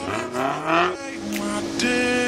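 Off-road 4x4 engine revving in rising sweeps, mixed with background music.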